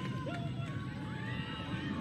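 Game sound from a women's lacrosse broadcast in a gap in the commentary: a steady low background rumble with faint, distant voices calling out, rising and falling in pitch.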